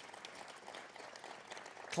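Faint, steady applause from an audience.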